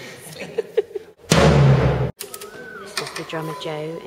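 A drum of the kit struck hard once with a wooden stick, a loud hit with a deep ring that is cut off abruptly after under a second. A few light clicks come just before it.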